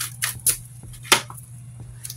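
Tarot cards being shuffled and handled for a clarifier draw: a few sharp card snaps and taps, the loudest a little past a second in, over a steady low hum.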